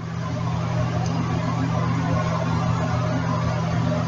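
Steam locomotive standing and letting off steam: a steady hiss over a low, even hum.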